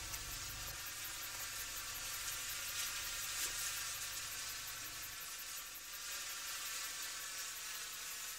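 Faint, steady hiss of outdoor background ambience, with no distinct animal call standing out.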